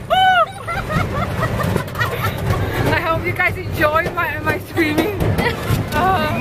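Several people's voices exclaiming and laughing over a steady low rumble, with a high arching exclamation about a quarter second in.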